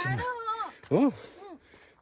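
A person's voice: two short pitched vocal sounds with no clear words, each rising and then falling in pitch, in the first second and a half.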